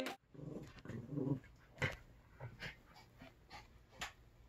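Two small dogs playing together in a pet bed, with faint low growls for about a second, then a few short, sharp sounds.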